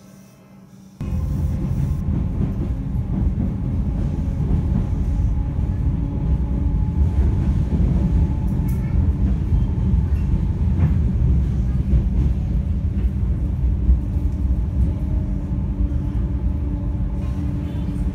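Suburban electric train running, heard from inside the carriage: a loud, steady rumble of wheels on rails with a few faint clicks. It starts abruptly about a second in, after soft music.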